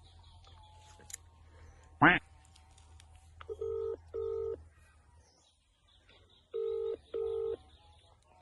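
Mobile phone ringback tone heard through the phone's speaker: a double beep, then the same double beep again about three seconds later, the call ringing and not yet answered. Before it, about two seconds in, a brief vocal sound from the man.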